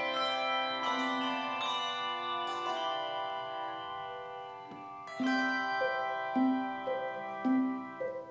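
Handbell choir playing: chords of bells are struck and left ringing, slowly dying away, for the first few seconds. From about five seconds in, a livelier pattern of short repeated bell notes comes nearly twice a second.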